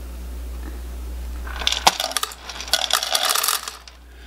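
WOPET automatic pet feeder dispensing two portions of dry kibble, the pellets clattering into its stainless steel bowl in two bursts starting about a second and a half in.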